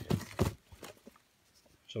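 A few short knocks and rubs of cardboard firework tubes in the first half-second as one fountain tube is pulled out of a packed box by hand.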